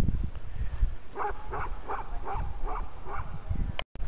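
A dog barking six times in quick succession over a low rumbling noise.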